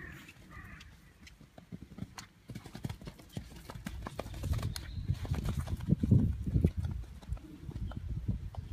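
A horse's hoofbeats on grass at a canter, growing louder as it passes close by in the second half and then easing off.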